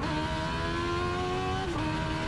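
Engine of a small race vehicle accelerating hard down a drag strip, heard on board. The pitch climbs steadily, drops sharply at a gear change just as it begins and again near the end, then climbs again.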